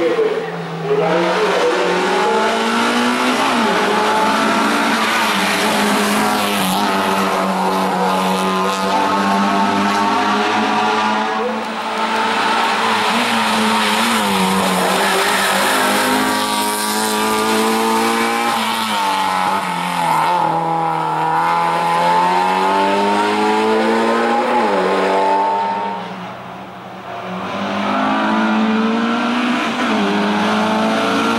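Race-prepared Alfa Romeo slalom car driven flat out up a twisting mountain road, its engine revving high and falling back over and over with gear changes and lifts for the bends. The engine dips briefly about twelve seconds in and again near the end before pulling hard once more.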